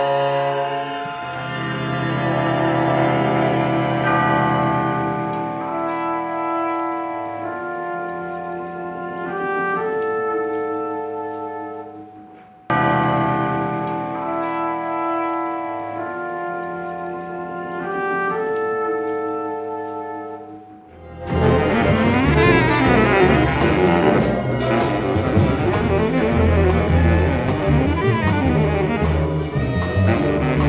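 Large jazz ensemble music. Layered horns and winds hold sustained chords that shift in steps, and the passage starts over abruptly about 13 s in. About 21 s in it cuts to a loud, dense full-band passage of saxophones, brass and drum kit.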